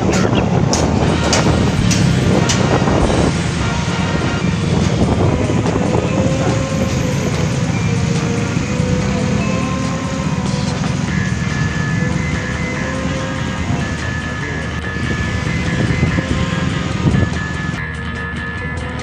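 Motor scooter riding along a street: a steady engine and road rumble with wind buffeting the microphone, and music playing over it.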